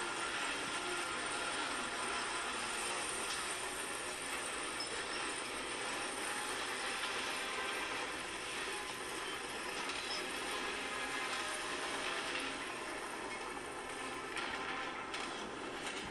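Steady, even background noise with no distinct events: room ambience.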